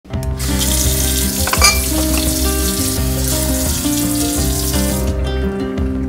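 Water from a kitchen faucet running into a glass, cut off abruptly about five seconds in, over background acoustic guitar music.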